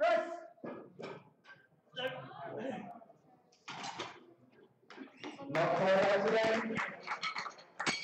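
Voices calling out during a bench press attempt: a loud call right at the start, a few short calls, then near-continuous shouting from about five and a half seconds in.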